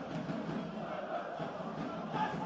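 Stadium ambience at a football match: a steady, diffuse murmur of distant voices and shouts, with faint chanting, carrying across a largely empty stadium.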